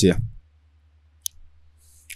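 A single sharp computer-mouse click a little over a second in, over a faint steady low hum.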